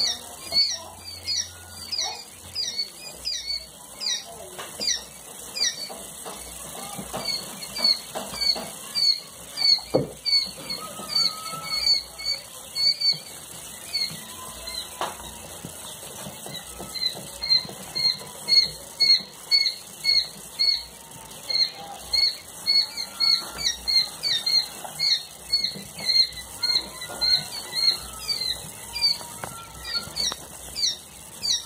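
A brooder full of newly hatched giant quail chicks peeping together: a steady stream of short, high, falling peeps, about two or three a second.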